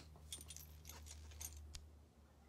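Near silence with a few faint light metallic clinks and jingles over a steady low hum, beginning with a sharper click.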